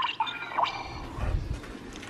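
Ben 10 Omnitrix toy's try-me feature sounding a short electronic effect from its small speaker, with a soft bump of the blister pack being handled about a second later.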